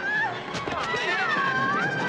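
Film score music with a high line that glides down and back up in the second half.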